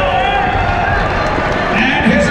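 A ring announcer's voice over the arena public-address system, with one long drawn-out note in the middle.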